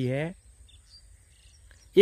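A man's voice ends a word, then quiet open-air field ambience with a few faint, brief bird chirps and a thin steady high hiss.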